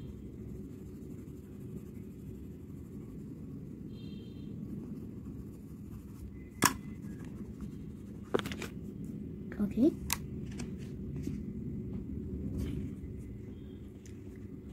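Coloured pencil scratching on paper and the drawing sheet being handled, with a few sharp taps and knocks in the second half, over a steady low hum.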